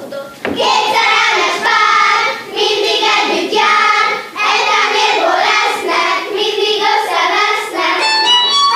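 A group of children singing a Hungarian folk song together, starting about half a second in.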